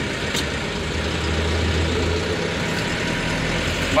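JMC 2022 light truck's engine running under way, heard from inside the cab. Its low hum builds about a second in and eases a little past the middle.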